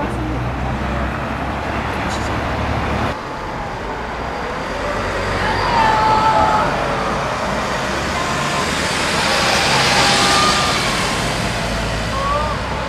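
Road traffic passing close by: a steady rush of cars and trucks that swells as vehicles go past, loudest about six seconds in and again about ten seconds in.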